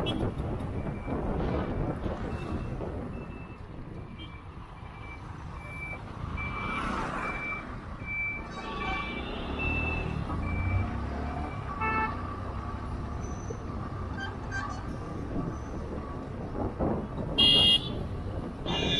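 Road traffic and wind noise while moving through town traffic, with a short electronic beep repeating about twice a second for the first ten seconds or so. Vehicle horns toot briefly, and one honks loudly near the end.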